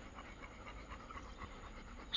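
Dog panting faintly and quickly.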